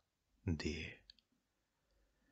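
A voice saying a single letter, 'D', followed right after by a few faint clicks; near silence otherwise.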